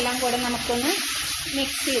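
Steamed red spinach sizzling as it fries in oil in a wok, stirred and tossed with a spatula, with a voice talking over it.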